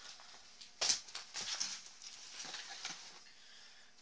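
Rustling and light handling noises as a nylon backpack is moved about, with one louder rustle about a second in.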